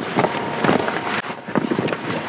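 Heavy fabric boat cover rustling and crinkling in an irregular run as it is pulled back and bunched up by hand.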